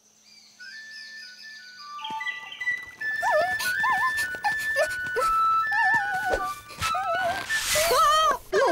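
A bamboo flute playing a slow melody of held notes that step upward, coming in out of near silence. From about three seconds in, wavering, warbling calls and light clicks play over it.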